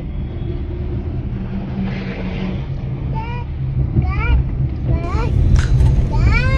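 Steady low rumble of engine and road noise from a moving road vehicle, heard from inside it, with a few short bits of voice in the second half.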